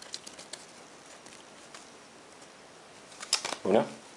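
Faint crinkling and small clicks of a foil Pokémon booster pack and its cards being handled in the first half-second, then a low steady hiss until a short spoken word near the end.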